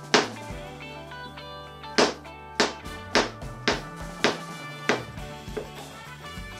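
Kitchen knife chopping a banana into slices on a plastic cutting board: a sharp tap each time the blade hits the board, about seven in all and roughly twice a second from about two seconds in. Background guitar music plays under the taps.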